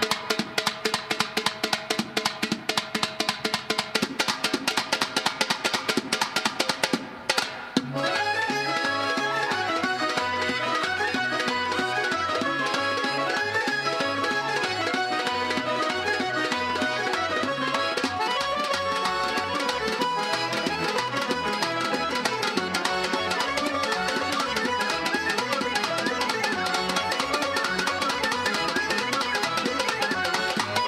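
Fast Azerbaijani folk dance music led by a quick, even drum beat with a melody over it. The music breaks off for a moment about seven seconds in, then the full band resumes with a busy melody over the drum.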